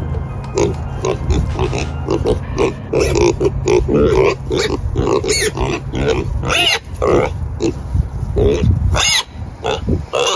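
Two pigs grunting rapidly and without a break as they root and feed at a clump of grass turf. A few sharper, higher-pitched calls stand out in the middle and near the end.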